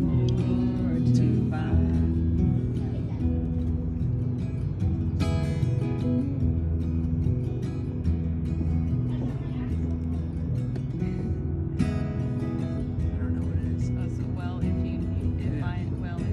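Acoustic guitar playing a slow country ballad, an instrumental passage between sung lines, with sharper strokes on the strings about five and twelve seconds in.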